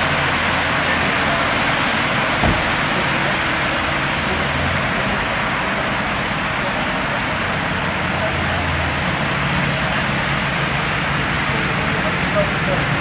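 A stretch limousine idling, with a low, steady engine hum under the steady rush of water from a fountain. A single thump comes about two and a half seconds in.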